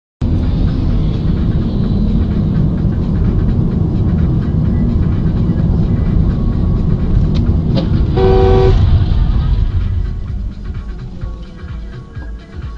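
Steady road and engine rumble inside a car's cabin, picked up by a dashcam. About eight seconds in, a car horn sounds once for about half a second. The rumble fades near the end as the car slows.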